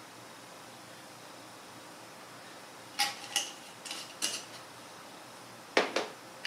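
Glass herb jars being handled and set down on a wooden table: a few light clinks and knocks about halfway through, then one sharp click just before the end.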